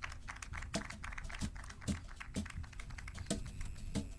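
Soft taps in a steady beat, about two a second, with faint light clicks between them.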